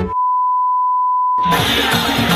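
Colour-bars test tone: a single steady beep lasting about a second and a half. It cuts off suddenly as music comes back in.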